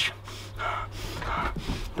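A man gagging in disgust at a stench, with a few breathy heaves and no words.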